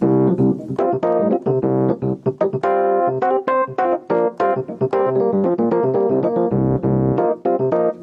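Digital keyboard set to a Rhodes-style electric piano sound, played in a jazzy way with a steady stream of chords and quick notes. A deep low note is held briefly near the end.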